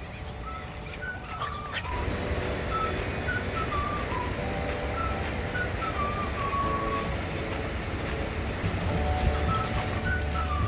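Background music led by a whistled melody of short stepping notes, starting about a second in, over a low steady rumble.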